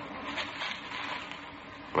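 Faint radio-drama sound effect of a car being started some way off, heard under a low, steady noise.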